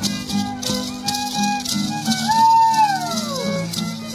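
Matachines dance music: a violin and guitar play a repeating tune while the dancers' hand rattles shake in time, about three strokes a second. About two seconds in, a long cry rises briefly and then slides down in pitch over the music.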